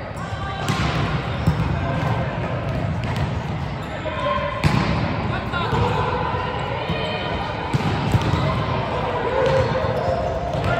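Echoing hubbub of a busy indoor volleyball hall: indistinct chatter and calls from players on several courts, with occasional sharp slaps and bounces of volleyballs on the hard floor.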